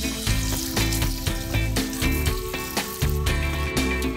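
Background music with a beat, over a hiss of tap water running onto dried red chile pods in a mesh strainer.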